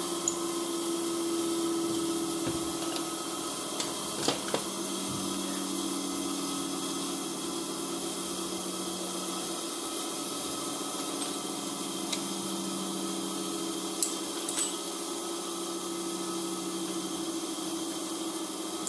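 A steady machine hum with a light hiss, its pitch shifting a little about halfway through, and a few sharp metallic clicks about four seconds in and again near the end, as the lathe's tool post and cross-slide are adjusted with the chuck stopped.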